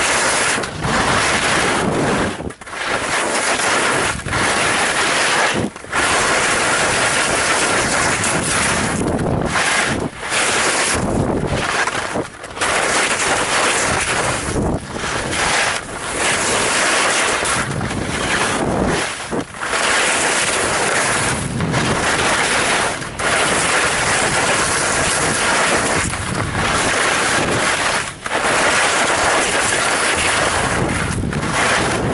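Loud, steady wind rush on a skier's camera microphone during a fast downhill run, broken by brief dips every second or two.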